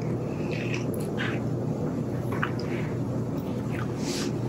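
Steady low room hum, with soft, scattered mouth sounds of someone chewing and tasting a corn muffin.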